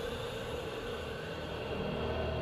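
A steady, low rumbling drone with a hiss over it and a held tone in the middle: the ambient sound bed of a documentary soundtrack.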